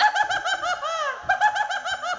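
A performer's high-pitched, rapidly pulsing vocal trill, about nine quick rise-and-fall pulses a second, with a short break about a second in.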